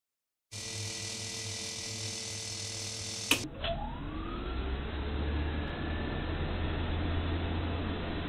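Small black metal desk fan switched on with a sharp click about three seconds in. Its motor spins up with a rising whine that levels off, then runs steadily with an airy rush and a low hum. Before the click there is a steady hum.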